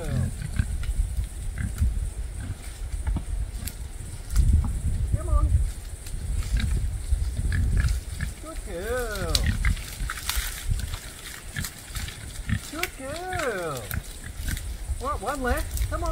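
Pigs foraging, with a few short squealing calls that rise and fall in pitch, clearest about nine, thirteen and fifteen seconds in, over a low uneven rumble.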